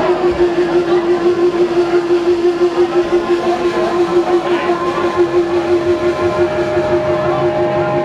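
Electric guitar holding one long, sustained, wavering note over the band, at live-concert volume. A second, higher note comes in near the end.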